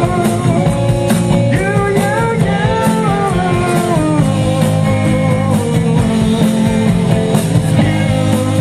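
Rock band playing live: electric guitars, bass and drums, with a lead melody that slides and bends in pitch over a steady beat.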